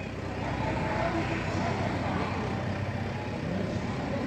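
Outdoor fairground ambience: a steady bed of noise with a low hum under it and faint, distant voices.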